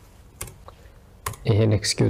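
A few keystrokes on a computer keyboard, single clicks about half a second and a second and a quarter in, as the rest of a command is typed and entered. A voice starts talking near the end.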